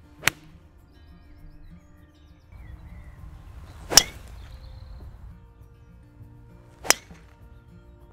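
Three separate golf shots, each a sharp crack of the clubhead striking the ball: an iron shot about a quarter-second in, then two drives off the tee, the first drive just before the midpoint being the loudest.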